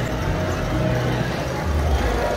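Steady running rumble of model trains on a layout's track, with indistinct chatter from people in the room.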